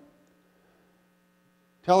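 A faint, steady electrical hum fills a pause in a man's speech, with the room otherwise near silent. His voice comes back just before the end.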